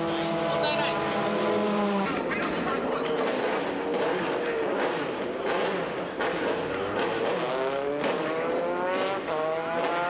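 Formula 3 race car engine running in the pit lane, holding a steady note at first. From about seven seconds in, the note rises in repeated sweeps as the engine revs up.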